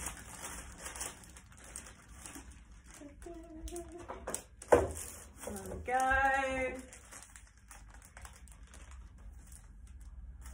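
Foil crisp packets and baking paper crinkling as they are handled and laid flat on a table. A sharp knock comes a little before halfway, followed soon after by a short vocal note lasting under a second.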